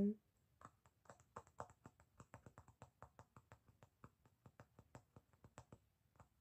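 ASMR tapping, a quick run of light taps at about seven a second that stands in for a withheld name in a spoken movie summary.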